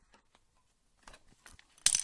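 Small plastic toy pieces being handled: a few faint ticks and rustles, then one sharp plastic click near the end.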